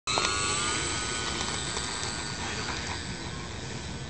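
Radio-controlled model autogyro's motor running at high speed, a steady high whine that rises slightly in pitch at first and then grows gradually fainter.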